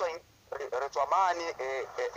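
Speech only: a person talking in a radio interview, with a short pause near the start.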